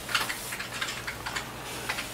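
Typing on a computer keyboard: a run of irregular key clicks, close to the microphone.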